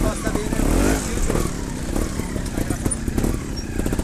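Trials motorcycle engine idling close by, a steady low rapid putter.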